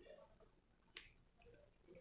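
Near silence with a single short plastic click about a second in, as a plastic multi-band ring holder is handled against the back of a power bank.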